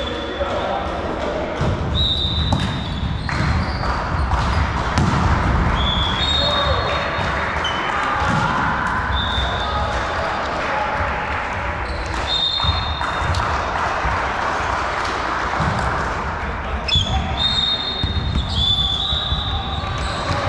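Indoor volleyball play in a gym: the ball being hit and bouncing, sneakers squeaking briefly on the court floor about a dozen times, and players calling out, all echoing in the hall.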